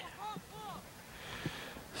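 Faint distant shouts from players or spectators calling across an open soccer field, two or three short rising-and-falling calls in the first second, with a couple of faint knocks.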